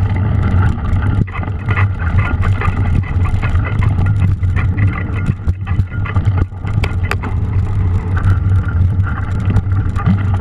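Mountain bike being ridden over muddy singletrack, heard through an onboard action camera: a steady low rumble of tyres and wind on the microphone, with frequent rattles and clicks from the bike over bumps.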